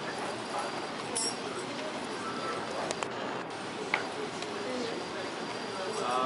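Background murmur of spectators in a hall, with scattered light clicks and knocks while a shake table shakes a balsa-stick model tower.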